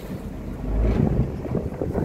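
Wind rumbling on the microphone aboard an open harbour tour boat under way, over the run of the boat and the slap of choppy water, with a strong gust a little before the middle.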